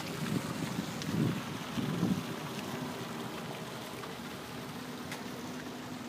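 Steady outdoor background noise with wind on a phone microphone, and a few low rumbles in the first two seconds.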